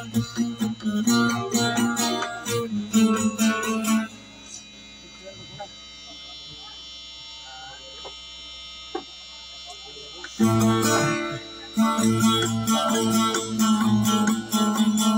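A plucked string instrument, in the style of a kutiyapi boat lute, plays rapid repeated notes. It stops about four seconds in, leaving only faint background sound, and starts again about ten seconds in.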